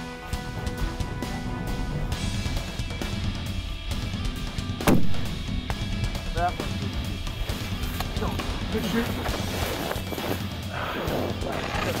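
A single rifle shot about five seconds in, sharp and the loudest sound, over steady background music.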